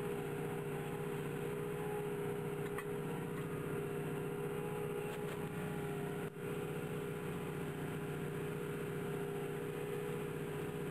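Tractor engine running steadily under load while pulling a plough through a stubble field, with a constant engine drone, dipping only for a moment about six seconds in.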